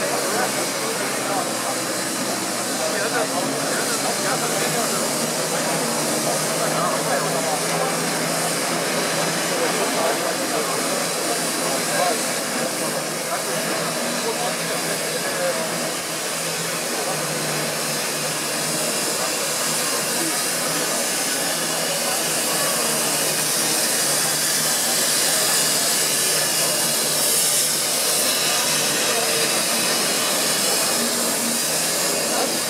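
Steady hiss of steam from a class 44 steam locomotive standing in steam, growing a little louder in the last third, over a crowd's chatter.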